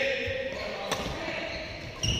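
Badminton racket striking a shuttlecock: one sharp crack just under a second in, over the general noise of an indoor badminton hall.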